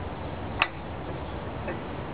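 Hands working at a glass funnel under a terracotta pot: one sharp small click a little over half a second in, and a fainter one about a second later, over a steady outdoor hiss.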